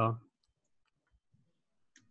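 A man's voice finishes a word, then near silence over the call audio, broken near the end by one faint, short click.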